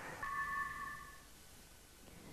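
A short electronic chime from a TV sponsor ident: two steady pure tones sound together for about a second, then fade away.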